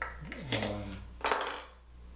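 Three sharp clicks and knocks, the last the loudest, as small tools and a wooden stop are handled and set down on a drill press table with an aluminum extrusion fence.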